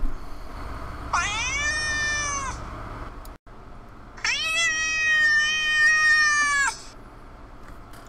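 A cat meowing twice: a short meow that rises in pitch, then a longer drawn-out one held steady, with the sound cutting out for an instant between them.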